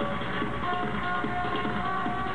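Progressive trance played loud over a club sound system: a steady driving beat under held synth notes, one of which comes in less than a second in.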